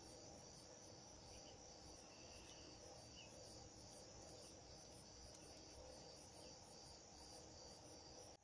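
Faint chorus of crickets: a steady high trill with a regular pulsing chirp over it, about three pulses a second.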